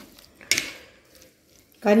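A spoon scrapes once through mango salad on a plate, about half a second in, a short scrape that fades quickly.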